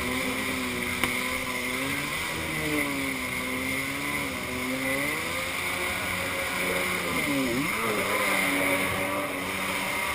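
Kawasaki X2 stand-up jet ski's two-stroke twin engine running under way, its pitch dipping and climbing again several times as the throttle changes, with a sharp drop and recovery about three-quarters of the way through. Water spray against the hull and wind on the microphone run underneath.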